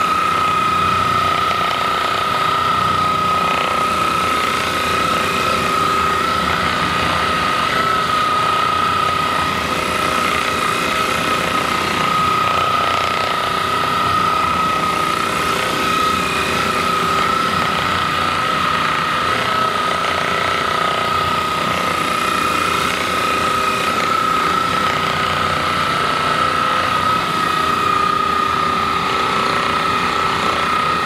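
Handheld percussion massage gun running steadily against a person's lower back, its motor giving a continuous high whine over a fast buzzing.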